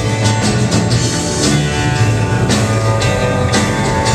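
Live rock band playing an instrumental passage: electric and acoustic guitars, upright bass and drum kit, with a drum or cymbal hit about once a second.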